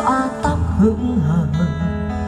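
Recorded song played loud through QT Acoustic RX602 column speakers with subwoofers: a melody line over a steady bass that comes in about half a second in.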